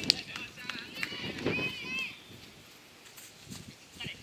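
A futsal ball kicked hard once, a sharp smack just after the start, followed by players' shouts and calls on the pitch that fade out after about two seconds.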